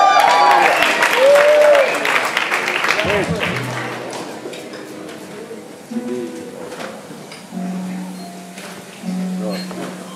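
Audience cheering and whooping, dying away over the first few seconds. Then an acoustic guitar is plucked a few times, single notes left to ring, as it is tuned between songs.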